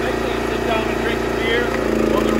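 Small gas engine of a homemade hydraulic log splitter running steadily, growing louder near the end.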